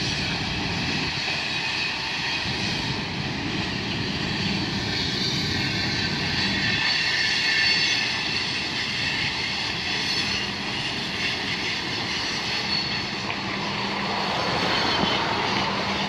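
Cars of a long Canadian Pacific freight train rolling slowly past, giving a steady, even rail noise with no break.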